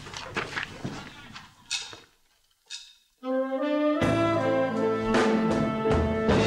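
A band with a brass section strikes up: a held brass chord comes in about three seconds in, and the full band with drums joins a second later.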